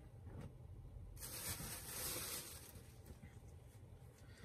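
Soft rustling of a T-shirt's fabric as it is bunched up and put down, rising a little over a second in and dying away at about three seconds.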